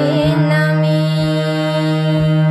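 A woman singing a Bengali song, holding a long drawn-out note that wavers slightly at first and then settles steady, over a sustained accompaniment drone.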